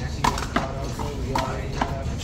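One-wall handball rally with a big blue rubber ball: sharp smacks as the ball is struck by hand and rebounds off the wall and concrete court, four in quick, uneven succession.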